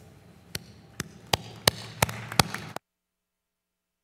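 Hand clapping: about six sharp claps at roughly three a second over a faint background of applause, then the sound cuts off abruptly to dead silence a little under three seconds in.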